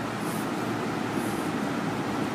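Steady low background rumble with no clear pitch, like room or traffic noise, with two faint short hisses, one about a third of a second in and one a little past a second.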